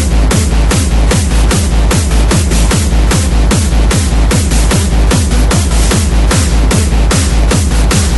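Loud electronic techno remix with a fast, steady kick drum whose every hit drops in pitch, under dense, noisy percussion.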